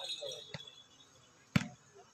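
A volleyball struck by a hand: one sharp slap about one and a half seconds in, with a fainter hit about half a second in, over faint crowd voices.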